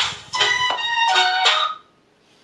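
Music played through the Chuwi Hi10 Go tablet's built-in stereo speakers, cutting off suddenly near the end as playback is paused. The speaker quality is on the level of budget smartphone speakers.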